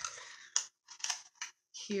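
A few short rustles and clicks of a small cardboard blind-box pin package being handled and turned over in the hands.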